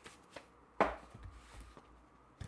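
Loose sheets of paper and a manila folder being handled at a table: light rustles and taps, with one sharp slap of paper a little before the middle.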